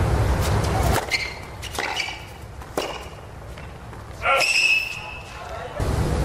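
Tennis rally: a racquet strikes the ball several times, as sharp pocks a second or less apart, then a short, loud, high voice-like cry about four seconds in. Steady crowd-and-court noise fills the first second and returns near the end.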